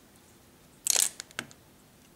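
Plastic Lego pieces being handled and clicked together: a short crackly clack about a second in, followed by two small sharp clicks.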